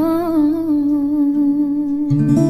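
Music from a love song: one long hummed vocal note with a slight waver, held over soft instrumental accompaniment.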